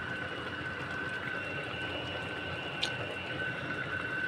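Jackfruit in coconut milk simmering in a stainless steel pot, a steady bubbling hiss, with a steady high whine underneath and one short tick about three seconds in.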